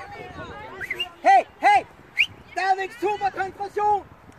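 High-pitched shouting from girls' or young women's voices on a football pitch: two loud, sharply rising-and-falling calls, a short high squeal, then a quick string of clipped shouted syllables.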